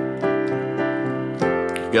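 Piano chords voiced with an added ninth (add2): one chord rings on, sustained, and a new chord is struck about a second and a half in.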